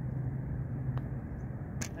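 Golf putt: a faint click of the putter striking the ball about halfway through, then a sharper clack near the end as the ball drops into the cup, over a steady low hum.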